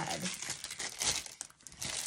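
Clear plastic bag crinkling as it is handled, a close run of quick crackles.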